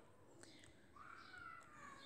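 Near silence, with a faint drawn-out animal call in the second half that rises and then slowly falls in pitch.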